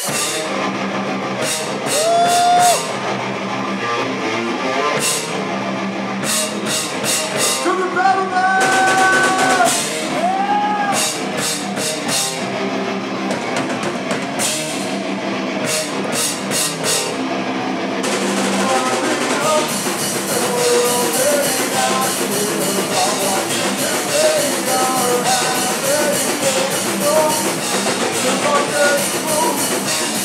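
Heavy metal band playing live: distorted electric guitar, bass guitar and a pounding drum kit. From about two-thirds of the way in the cymbals wash continuously, and near the end a vocalist shouts into the microphone.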